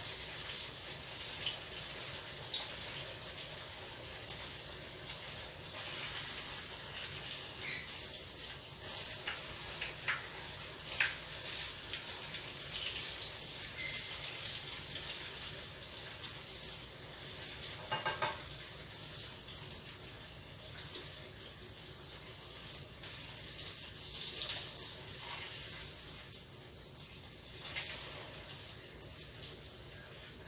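Yuca-dough fritters (nuégados) frying in hot oil in a pan: a steady sizzle with scattered small crackles.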